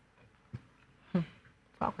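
A person's voice making three short, separate vocal sounds about half a second apart, each dropping in pitch, with near quiet between them.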